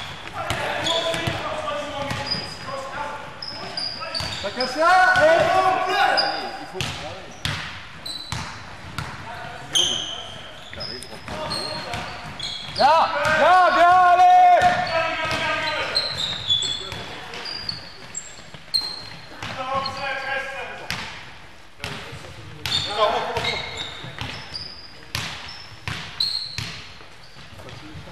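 A basketball game in an echoing sports hall: the ball bouncing on the wooden floor and sneakers squeaking in short high chirps, with players shouting now and then, loudest about halfway through.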